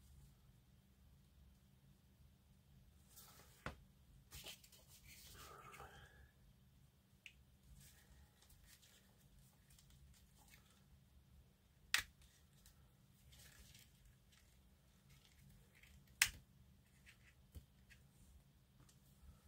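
Quiet handling of plastic model kit parts: a soft rustle a few seconds in, then a few sharp clicks of plastic on plastic, the loudest two about 12 and 16 seconds in, as the parts are pressed onto the frame.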